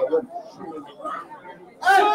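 Indistinct chatter of people talking near the microphone, with a loud held shout starting just before the end.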